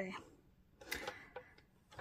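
A light click from the plastic rotary paper trimmer being handled, about a second in, with a fainter click just after.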